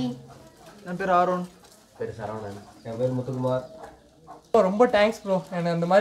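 Men's voices talking in short phrases, with a low, steady cooing, typical of pigeons or doves, in between and under the words.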